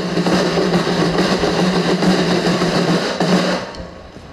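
A group of snare drums played in a continuous roll over backing music, cutting off shortly before the end.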